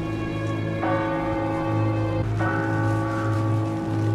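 A church bell tolling: two strokes about a second and a half apart, each ringing on, over a low pulsing hum.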